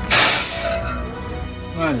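LPG pump nozzle uncoupled from the tank's filler adapter: a sudden loud hiss of trapped gas venting, dying away within about half a second.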